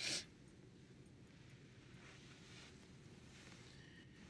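Near silence with a faint low hiss, opened by one short, sharp breathy rustle.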